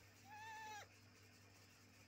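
A baby's single soft, high-pitched vocal sound, held at an even pitch for about half a second.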